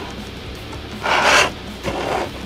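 Clear plastic blister tray and plastic bag crinkling and rubbing as they are handled, with one louder rustle about a second in and a shorter one near the end.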